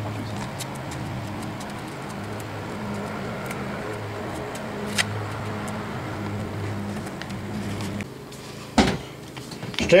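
Cub Cadet lawn tractor engine idling steadily, a low hum that drops away about eight seconds in, followed by a single knock shortly before the end.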